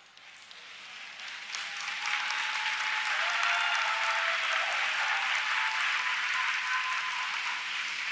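A large audience applauding, with a few voices calling out. It swells over the first two seconds, holds steady, and dies down just before the end.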